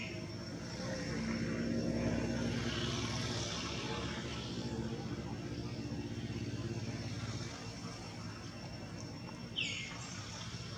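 A distant engine drone that swells about a second in and fades away about seven and a half seconds in. A short bird chirp comes near the end.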